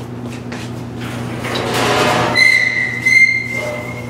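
Stainless-steel utility cart rolling on its casters. The rolling noise swells, and about halfway in a steady high-pitched whine sets in over a constant low hum.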